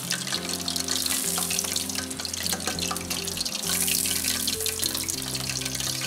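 Thin strips of pheasant breast deep-frying in a saucepan of oil at about 180 °C: a steady crackling sizzle. Background music with sustained notes plays over it.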